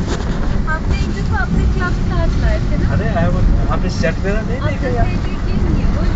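A vehicle driving, with a steady low rumble, and indistinct voices over it.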